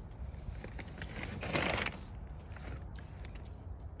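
Quiet outdoor handling noise: a low rumble, with one short rustling hiss about a second and a half in.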